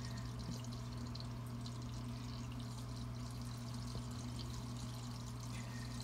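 Steady pouring, trickling water noise from an aquarium's Fluval FX5 canister filter circulating the tank, with a low steady hum underneath.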